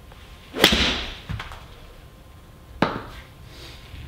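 Golf club striking a ball off a hitting mat, a single sharp crack about half a second in with a short rush after it. Two fainter knocks follow, the second near three seconds in.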